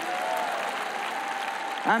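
A large audience applauding, a steady wash of clapping. Speech cuts in over it near the end.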